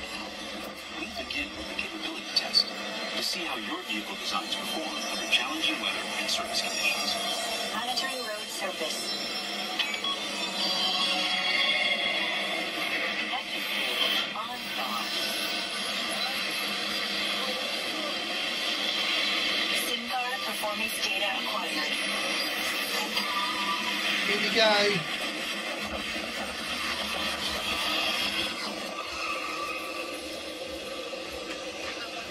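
Soundtrack of an Epcot Test Track ride-through video playing from a tablet's speaker: music with voices over it, thin and without bass.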